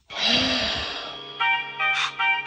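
Cartoon soundtrack: a sudden noisy burst with a short rising-and-falling tone, then music with held notes coming in about one and a half seconds in.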